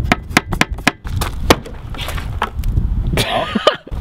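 Quick sharp clicks and knocks from a Vauxhall Astra's snapped plastic fuel-filler flap being worked by hand, over a low wind rumble on the microphone. A loud thump comes right at the end.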